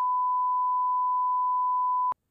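An electronic sine-wave beep: one steady, unbroken high tone held at a single pitch, with no other sound under it.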